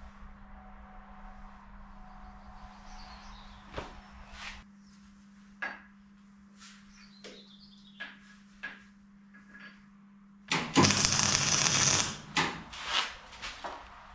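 Faint clicks and knocks over a steady low hum, then welding on the steel loader frame about ten seconds in: a loud crackling hiss lasting over a second, followed by several short bursts as the welds are tacked.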